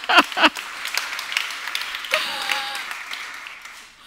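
Audience applauding; the clapping thins out and fades away toward the end. A voice is heard over it in the first half second.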